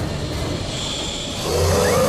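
Mechanical whirring and rumbling of robot-movement sound effects, swelling louder about a second and a half in.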